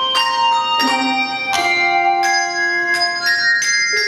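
Handbell choir ringing a piece: chords struck in quick succession, a new one about every half second, each ringing on under the next.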